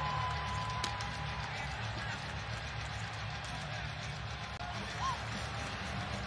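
Hockey arena ambience: a steady, low crowd murmur with faint music over the arena sound system, and one sharp click about a second in.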